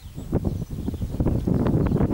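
Wind buffeting an outdoor camera microphone: a steady low rumble, with a few soft knocks about half a second in.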